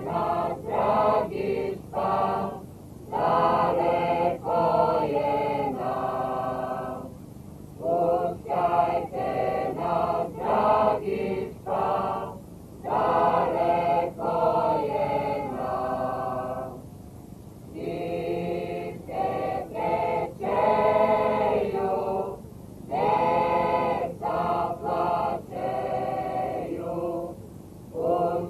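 Mixed folk choir of women and men singing a folk song together, unaccompanied, in phrases of about five seconds with a short breath between each.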